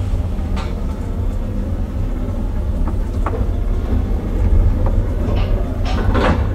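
Traction elevator car travelling in its shaft, heard from inside the car: a steady deep rumble with a few sharp clicks and knocks, the loudest near the end.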